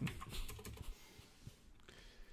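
Faint typing on a computer keyboard: a quick run of keystrokes in the first second, then a few scattered ones.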